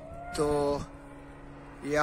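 A man speaking briefly: one drawn-out word about half a second in, then the start of another near the end, with a pause between. Under the pause runs a faint steady hum.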